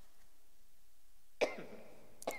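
A single sharp cough about one and a half seconds in, with a short fading tail.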